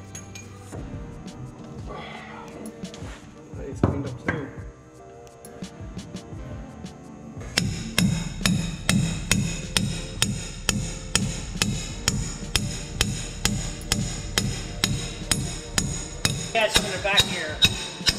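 Hammer striking a steel drift punch, metal on metal, in steady blows about two a second starting a little before halfway through, driving the old S-cam bushing and seal out of a truck's brake spider.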